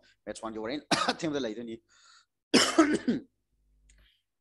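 A man clears his throat with a cough about two and a half seconds in, after a second or so of short voiced sounds.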